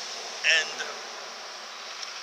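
A steady high-pitched hiss of outdoor background noise, with a man's voice saying one short word about half a second in.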